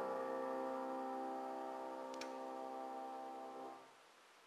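Grand piano chord held and slowly dying away, fading out just before the end, with a faint click about two seconds in.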